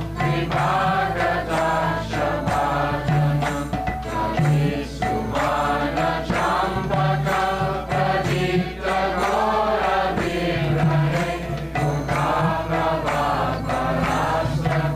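Voices chanting a devotional kirtan over a steady low drone, with a regular percussive beat.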